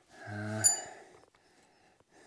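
A short, low, even-pitched voice sound, then a sharp metallic clink with a brief high ring as the steel pipe catch of a gate latch is knocked into place against metal.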